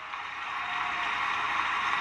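Crowd applauding, the clapping swelling gradually.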